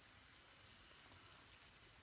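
Near silence with a faint, even sizzle from lamb, onions and tomatoes frying in a karahi over the gas flame.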